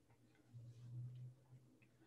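Near silence in a pause between spoken sentences, with a faint low hum for about a second near the middle.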